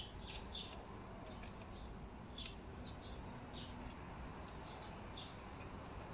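Faint, short high-pitched bird chirps, irregular at about one or two a second, over a low steady background hum.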